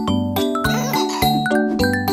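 Instrumental children's song music: bell-like chimes and sustained notes over a bass line, with a steady beat of about four strokes a second.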